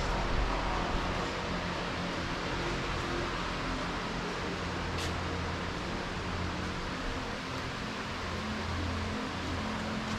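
Steady low hum and hiss of workshop room noise with a fan running, and one faint click about halfway through.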